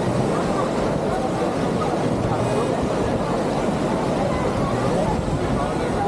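A crowd of people talking, over a loud, steady rushing roar.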